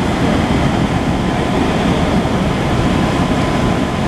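Steady low rumble of fire trucks' diesel engines running at the scene.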